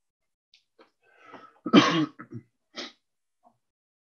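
A man clearing his throat and coughing: a rasping start a little after a second in, one loud throaty cough at about two seconds, and two short ones just after.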